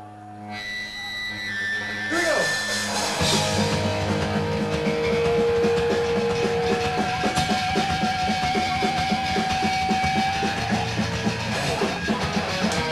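Punk rock band music: held electric guitar notes swell, then drums and guitars come in about three seconds in with a steady driving beat.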